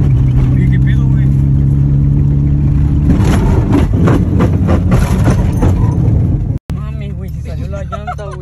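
Car cabin filled with a loud, heavy low drone and shaking from the car vibrating hard as it drives, which the on-screen caption puts down to a wheel coming off. The sound cuts out briefly near the end and a man's voice follows.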